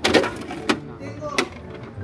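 Hard plastic knocking: about three sharp clacks, roughly 0.7 s apart, as a plastic mini fridge is lifted out of a plastic tote packed with toys.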